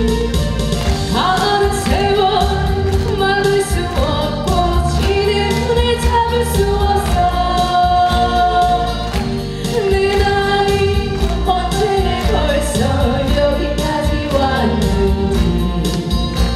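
A woman singing solo into a handheld microphone, her held notes wavering with vibrato, over amplified accompaniment with a steady beat.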